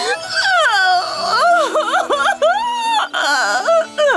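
A cartoon character's voice wailing and sobbing in long, wavering cries that slide up and down in pitch.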